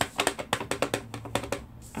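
Wood-mounted rubber stamp tapped quickly and repeatedly onto an ink pad, about eight light taps a second, stopping shortly before the end: the stamp is being inked.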